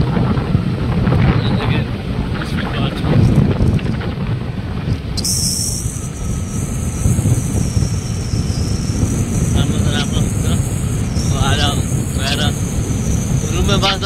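Wind buffeting the microphone of a moving motorcycle, with the rumble of the ride at road speed. A loud, steady low rush with a few short bits of voice near the end.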